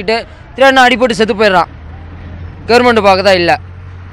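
A man speaking in two short phrases, with a steady low hum underneath that carries on through the pauses.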